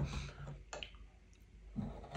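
A few light clicks of a spoon against a small glass jar as ice cream is scooped out, with a sharper click at the start and another near the middle.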